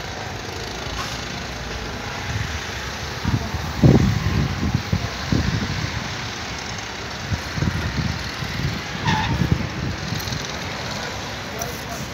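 Steady outdoor street background noise, broken by irregular low rumbling bursts from about three to ten seconds in, the strongest near four seconds.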